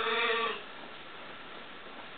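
A sheep gives one short bleat right at the start, rising in pitch and lasting under a second.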